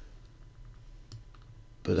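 A few faint, sharp computer mouse clicks while a slider is adjusted in editing software.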